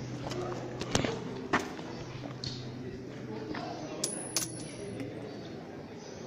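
Faint, indistinct voices in a rock grotto, with a few sharp knocks or clicks: one about a second in, another half a second later, and two close together around four seconds.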